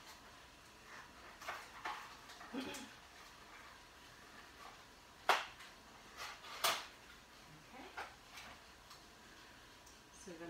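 Small cardboard CPU box and its plastic clamshell tray being handled and opened, with scattered light rustles and two sharp plastic clicks about a second and a half apart midway through.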